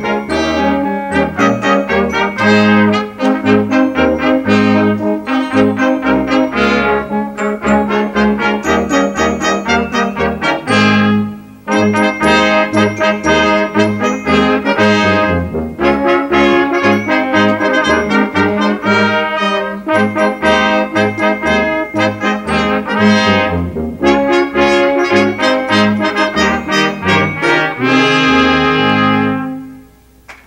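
High school brass choir (trumpets, French horns, euphonium and tubas) playing a piece, with a brief rest about eleven seconds in. It closes on a long held chord that cuts off right at the end.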